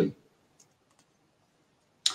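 The end of a man's spoken word, then a near-silent pause with two faint clicks about half a second and a second in, from a computer click advancing the presentation slide.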